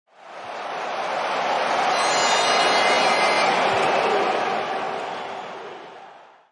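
Channel-intro sound effect: a swell of rushing noise that fades in over about a second, is loudest midway and dies away near the end.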